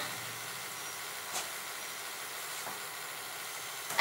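Steady faint hiss of room tone and recording noise, with one faint click about a second and a half in.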